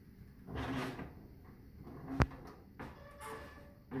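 Metal front cover of a gas fireplace rattling and scraping as it is gripped and tugged to be lifted off, with one sharp click about two seconds in.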